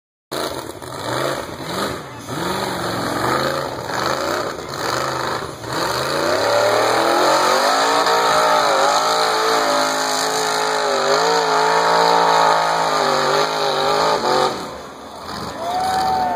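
Rock bouncer's engine revving in short bursts, then held at high revs for about eight seconds as it drives up a steep dirt hill climb. The revs drop off sharply near the end.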